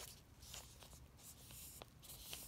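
Faint rustling of newsprint under the fingers as a newspaper page is held and shifted, in a few short soft scrapes with a light tick near the end.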